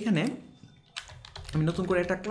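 Computer keyboard being typed on, several keystrokes in quick succession as a word is entered.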